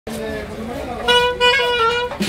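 A wind instrument comes in about a second in, playing a held note that steps down to a lower note near the end, over crowd chatter.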